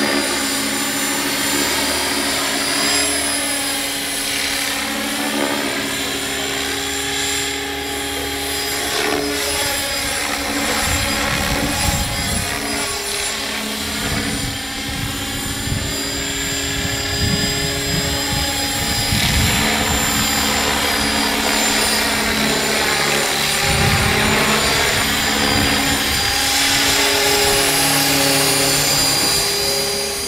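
Align T-Rex 500X electric RC helicopter flying fast passes: a steady motor and rotor whine whose tone sweeps up and down several times as it goes by.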